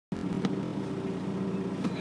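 A car idling, heard from inside the cabin as a steady hum, with a small click about half a second in.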